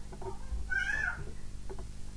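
A single short, high-pitched cry whose pitch bends up and down, about a second in, over a steady low hum.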